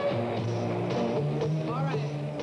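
Rock band recording: electric bass stepping between held low notes under electric guitar, with a voice coming in near the end.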